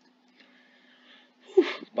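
A person breathes in faintly, then lets out a loud, breathy 'whew' sigh about one and a half seconds in.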